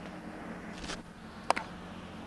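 Baseball bat striking a tossed batting-practice pitch about one and a half seconds in: one sharp crack with a short ringing tone, over a faint steady hum.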